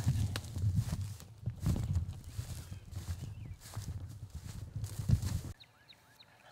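Hurried footsteps through grass and brush, with knocks and rumble from a jostled handheld camera; the sound is irregular and cuts off abruptly near the end.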